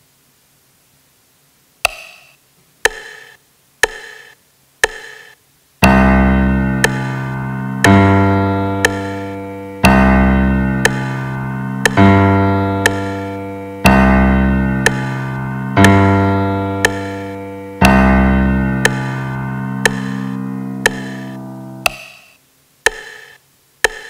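Digital piano sound from a music-education web app's on-screen keyboard, played through speakers. A metronome clicks once a second as a four-beat count-in, then eight low bass notes follow, one struck about every two seconds and fading away, with the clicks keeping time throughout: a bass line being recorded at 60 bpm.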